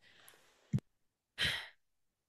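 A short breath or sigh into a close microphone, fading out, preceded by a single small click, likely a mouth click.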